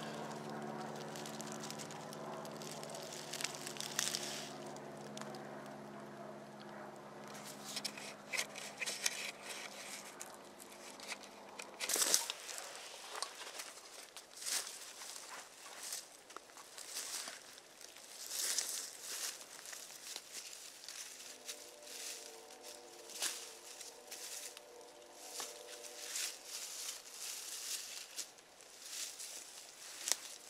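Rustling and crunching in dry fallen leaves, with scattered sharp cracks of sticks, as someone moves about, sets down a backpack and clears sticks off the forest floor. Over the first twelve seconds a steady low drone with several pitches lies underneath, ending abruptly.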